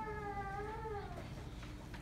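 A young child's high, wavering cry, one drawn-out wail of about a second and a half that bends up and then falls away.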